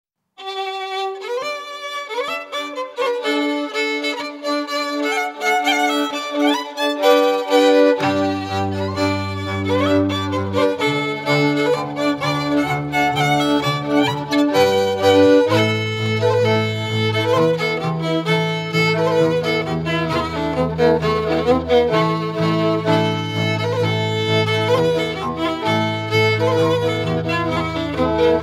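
Lithuanian folk fiddle playing a village foxtrot dance tune alone at first, joined about eight seconds in by a low bowed bass line from the basedlė, a folk string bass.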